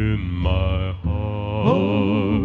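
A man singing a slow gospel song, holding long, wavering notes, with a steady musical backing underneath.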